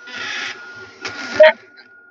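Handheld rotary tool running with a steady whine, its heat-hardened three-point cutter bit cutting into wood in two short rasping strokes, one at the start and one about a second in.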